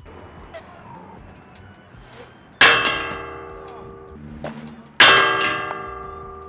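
Two loud metallic clangs about two and a half seconds apart, each ringing on and dying away slowly.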